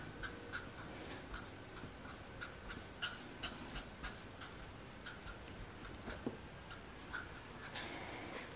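A felt-tip marker coloring on paper: soft, irregular scratchy strokes with small ticks, several a second.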